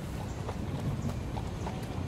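Hooves of a carriage horse clip-clopping at a walk, a few sharp hoof strikes a second over a low steady rumble.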